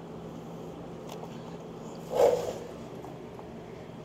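Chrome footboard assembly of a Honda GL1500 Goldwing being wiggled back by hand, with one short knock a little after halfway, over a steady background hum.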